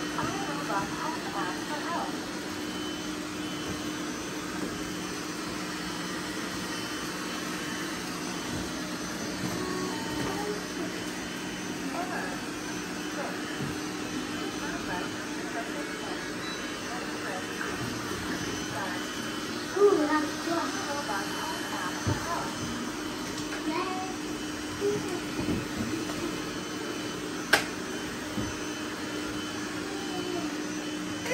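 Several robot vacuums, iRobot Roombas and a eufy among them, running together: a steady whirring hum with a few steady tones in it. There is a single sharp click near the end.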